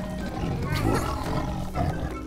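A cartoon sabre-toothed cat's growling roar about a second in, over light background music.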